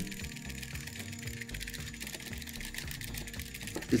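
Quiet background music with sustained tones. Under it, faint clicking and rattling from the small Anki Vector robot being shaken by hand.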